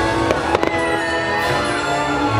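Fireworks launching and bursting over the show's loud soundtrack music, with a quick cluster of sharp bangs about half a second in.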